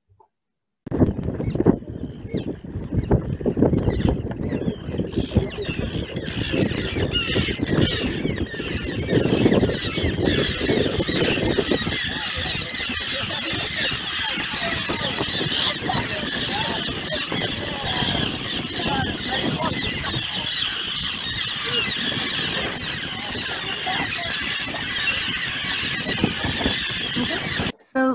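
A breeding colony of mostly common terns, with a few Arctic terns, calling in a dense, continuous chorus of many overlapping high calls that grows fuller in the second half. Under the calls in the first half runs a low rumble from the approaching boat and wind.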